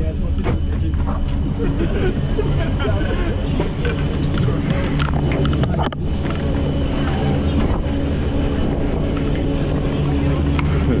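A gondola cabin running through the lift terminal: a steady low machinery hum and rumble with small rattles and clicks throughout, and muffled voices.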